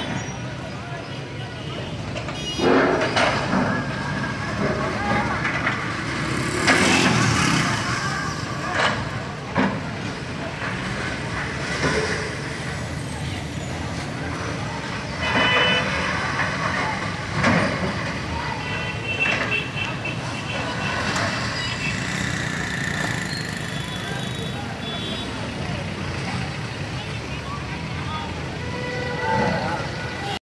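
A hydraulic excavator's diesel engine runs steadily as it demolishes a shop building, with several loud crashes of breaking masonry and debris a few seconds apart. Crowd voices sound underneath.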